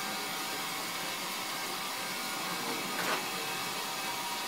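Steady rushing hiss of flowing air, with a faint steady tone under it and a brief soft sound about three seconds in.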